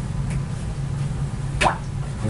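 A short plop, falling in pitch, about one and a half seconds in, as a paintbrush is dipped into water, over a steady low hum.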